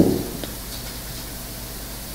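A pause in a man's speech at a microphone. The last word fades out in the first moment, then there is only a steady low hiss of room tone and microphone noise.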